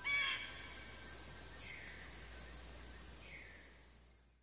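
The closing ambient layer of a lofi track after its music stops: a steady, high, cricket-like chirring over soft hiss, with two faint short calls, fading out to silence near the end.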